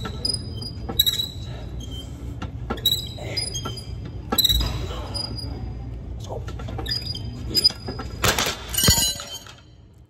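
A cable machine's steel weight stack clinks and clanks again and again over a steady low hum as the plates rise and drop through cable curl reps. Near the end comes a louder, longer clatter.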